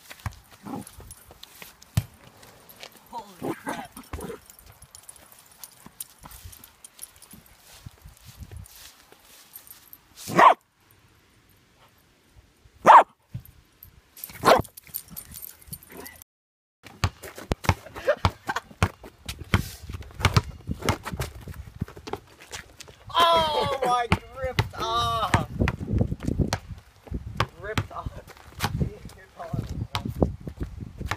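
Small long-haired dog barking: a few short, sharp barks spaced seconds apart, with more pitched yipping later on.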